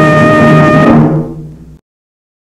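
Orchestral film score's closing chord, held steady, then dying away about a second in and cutting off abruptly.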